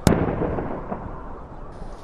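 A single loud, sharp bang, then noise that slowly dies away over about a second and a half.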